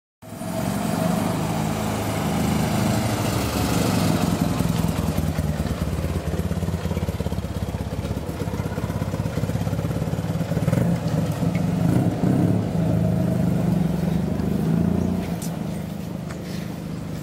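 Toyota Sports 800's air-cooled flat-twin engine running as the car drives off, its note rising and falling with the throttle and fading slightly near the end as it moves away.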